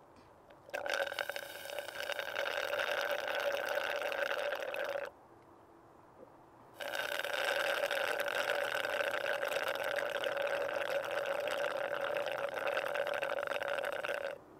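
Loud slurping through a drinking straw from a plastic cup, in two long, steady pulls, the first about four seconds and the second about seven, with a short pause between them.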